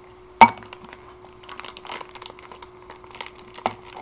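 A sharp clack of a clear plastic lid being handled about half a second in, then light crinkling and small clicks of an instant-ramen bag being handled and folded, with another click near the end.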